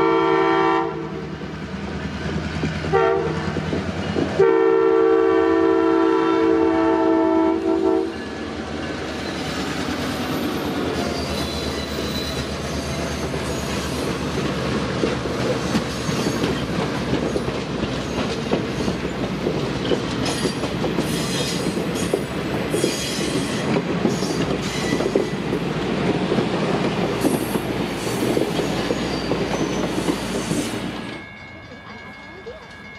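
Air horn of an EMD F-unit diesel locomotive sounding a chord in three blasts: a long one ending about a second in, a short one near three seconds and a long one to about eight seconds, the close of a grade-crossing signal. After that the locomotives and a string of passenger cars roll past, their wheels clacking steadily over the rail joints, and the sound falls away right at the end as the last car goes by.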